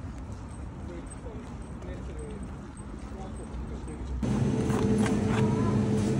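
Open-air ambience with a low rumble and faint distant voices. About four seconds in, it switches abruptly to a louder supermarket hum: the steady drone of refrigerated display cases, with a few light clicks.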